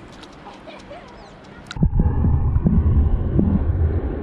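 Shallow sea water heard through a waterproof camera at the waterline: faint small splashes at first, then about two seconds in the camera goes under and the sound turns to a loud, muffled underwater rumble of sloshing water.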